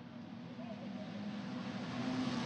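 TCR touring cars' turbocharged two-litre four-cylinder engines running hard on track, one steady engine note that rises slightly in pitch and grows louder as the cars come closer.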